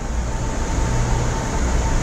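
Steady background din at an airport terminal entrance: a low rumble with hiss, like distant traffic and building noise, and a faint steady whine.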